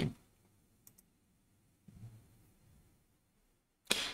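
Mostly quiet room with a single faint click about a second in, typical of a computer mouse button, and a soft low sound about two seconds in.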